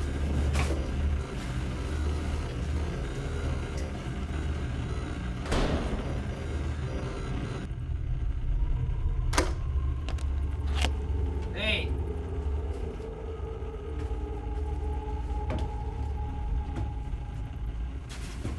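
Low, steady rumbling drone of horror-film sound design, with scattered knocks and creaks and a brief wavering tone about two-thirds of the way in.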